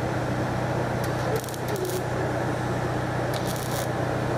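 MIG welding on steel van bodywork: the arc crackles and sizzles steadily over a low electrical hum, with brief sharper bursts of spatter a few times.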